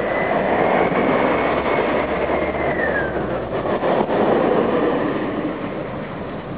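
A motor vehicle passing by: a broad rushing noise that swells and then fades, with a faint high tone that drops in pitch about halfway through as it moves away.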